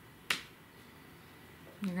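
A single sharp finger snap about a third of a second in, against quiet room tone, before a woman's voice resumes near the end.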